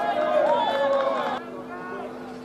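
Several voices shouting and calling out at a football match, with long drawn-out calls. They cut off abruptly about one and a half seconds in, leaving quieter ground noise with a steady low hum.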